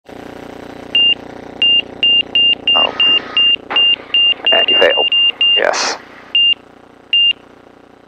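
Stall-warning beeps from the avionics of a Van's RV-12 in the landing flare: short high beeps come faster and faster until they run almost together, then slow and stop near the end. They warn of a high angle of attack near the stall. An engine hum sits under the first few beeps.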